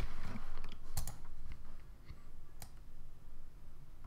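A few sharp, spaced-out clicks from a computer mouse and keyboard, the clearest about a second in and again past halfway, over a faint low hum.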